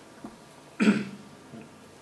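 A person clearing their throat once, a short sharp sound about a second in, in a quiet room.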